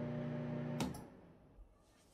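Cuchen dial-timer microwave oven running with a steady electrical hum. The hum cuts off with a sharp click a little under a second in as the cooking cycle ends.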